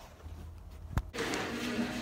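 A quiet low hum in a car cabin, then a single sharp click about a second in. Background music starts right after the click.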